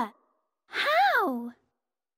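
A cartoon girl's voice giving one breathy, thoughtful sigh, rising and then falling in pitch, lasting a little under a second.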